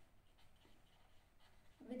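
Faint scratching of a felt-tip marker writing on paper, barely above silence. A woman's voice starts just before the end.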